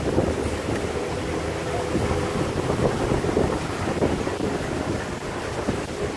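Open-sided safari truck on the move: a steady rumble of engine and road noise, with wind buffeting the microphone.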